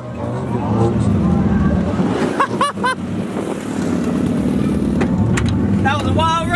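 Turbocharged Honda Civic drag car's engine running at low revs as the car rolls slowly along. A couple of short voice calls come over it about two and a half seconds in.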